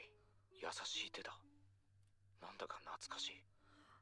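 A voice whispering, in two short breathy bursts: one about half a second in, the other about two and a half seconds in.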